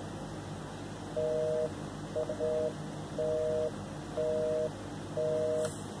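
Telephone busy signal heard through a smartphone's speakerphone: a two-tone beep, half a second on and half a second off, repeating about once a second from about a second in, one beep briefly broken. The number being called is busy, so the call is not getting through.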